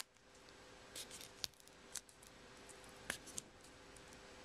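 Fingernails picking at packing tape on a plastic card sleeve: faint, scattered crackles and sharp ticks, a few per second, from the tape and stiff plastic.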